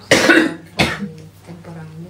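A man coughing twice in quick succession, the first cough longer than the second.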